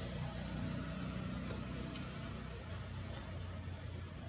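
Low, steady engine hum from a nearby motor vehicle, fading gradually in the second half.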